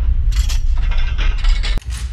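Bank-vault door lock sound effect: the handwheel turns and the bolt mechanism gives a run of ratcheting metal clicks over a deep rumble. It ends in a sharp clunk near the end as the lock releases.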